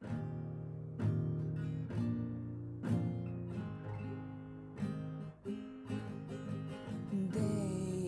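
Acoustic guitar strummed as a song's intro: chords struck about once a second and left to ring.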